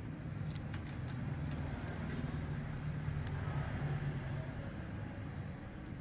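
Steady low background hum, with a few faint clicks about half a second and a second in.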